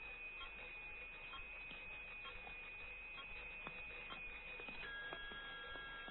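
Electronic laboratory equipment giving a steady high tone with faint clicks. About five seconds in, the tone gives way to a different set of steady tones.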